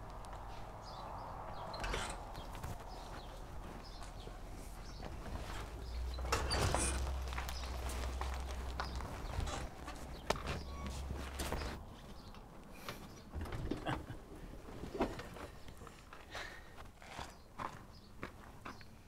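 Footsteps on a dirt and gravel lot, with scattered crunches and knocks, over a low rumble that swells for several seconds in the middle.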